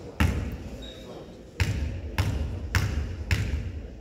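A basketball bounced on a hardwood gym floor by a free-throw shooter dribbling before the shot: five bounces, one near the start and then four about half a second apart.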